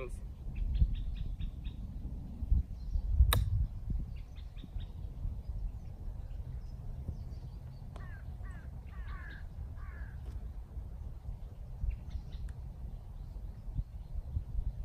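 Wind rumbling on the microphone, with one sharp golf iron strike about three seconds in and a few crow caws a little past the middle.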